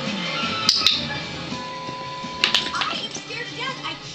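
Television audio playing in a room: background music and voices, with two pairs of sharp clicks, about a second in and again halfway through.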